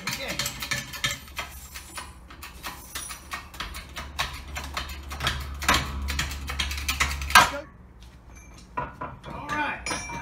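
A 20-ton hydraulic bottle-jack shop press being hand-pumped to press a front wheel hub out of its bearing, with repeated irregular metal clicks and clanks from the jack handle and press. Near the end comes one loud sharp crack, the back side of the bearing letting go, and the clanking stops.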